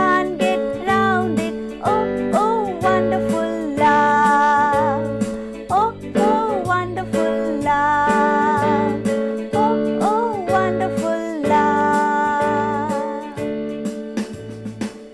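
A woman singing a children's worship action song over instrumental accompaniment with a steady, regular bass beat.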